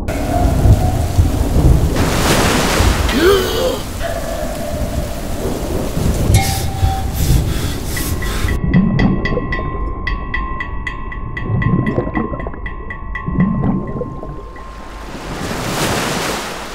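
Rough, stormy sea: surf churning and breaking with wind and deep rumbling. About halfway through, a steady tone with rapid regular ticking joins it for several seconds, then fades.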